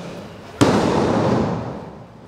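A wrestler landing hard on a wrestling ring's mat after a jump: one loud boom from the ring a little after half a second in, followed by a rumble that fades over about a second.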